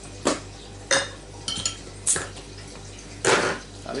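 Glassware and a bottle being handled on a table: a handful of separate sharp clinks and knocks, a couple of them briefly ringing, the last and loudest about three seconds in.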